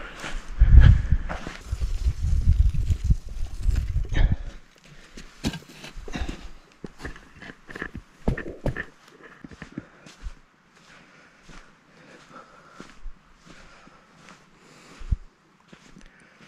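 Footsteps on wet sand, a run of short, uneven scuffs and knocks at a walking pace. A heavy low rumble on the microphone covers the first four seconds or so and then stops suddenly.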